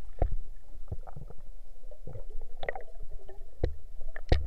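Muffled underwater noise picked up by a camera in a waterproof housing: irregular knocks and clicks over a low rumble.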